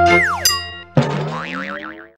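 Short TV-station logo jingle: held synth notes with a cartoon-like falling 'boing' glide, then about a second in a new chord rising with a warbling high tone that fades out.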